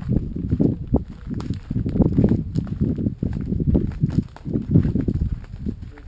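Footsteps on a dirt bush track, close to the microphone, with a steady walking rhythm of about two steps a second.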